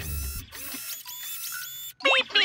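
Cartoon robot sound effect as the robot's jointed metal arms extend: a string of short electronic whirring tones, one after another, that cuts off suddenly just before the end.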